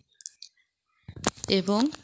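A few faint clicks, a short pause, then a woman's voice speaking Bengali in the second half.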